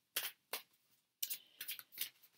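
Tarot cards being handled and shuffled in the hands: a few short papery rustles, then a quicker run of them from a little past halfway.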